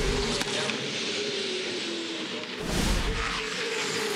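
A broadcast graphic transition effect: a low boom with a whoosh at the start and a second, louder whooshing boom about two and a half seconds in. Under it runs the steady drone of race car engines.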